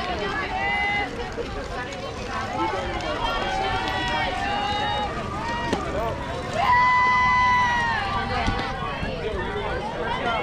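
Several voices calling out and cheering in short phrases, with one loud, long, high-pitched held shout a little past the middle. There is also a single sharp knock shortly before that shout.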